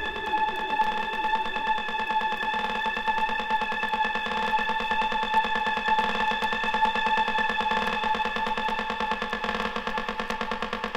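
Trance music in a breakdown: a held synthesizer chord, chopped into rapid even pulses, with no kick drum or bass.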